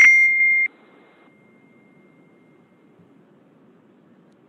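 A single high electronic beep on the conference-call audio, about two-thirds of a second long with a brief break partway through.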